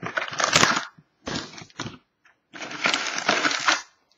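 Foil-wrapped Panini Prizm trading-card packs crinkling as they are handled and stacked, in three bursts with short pauses between.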